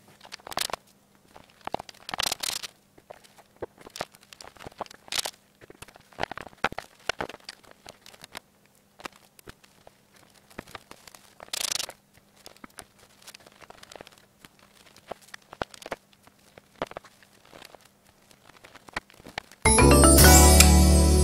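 Scattered light knocks, clicks and short scrapes of wood being handled as glue-coated wooden dowel legs are twisted and pushed into tight holes in a pine board. Loud music cuts in suddenly just before the end.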